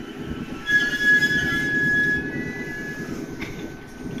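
An Ichibata Electric Railway train's wheels squealing on the rails over the low rumble of the train running. A steady high squeal starts about a second in and lasts under two seconds, then a second, slightly higher squeal follows briefly.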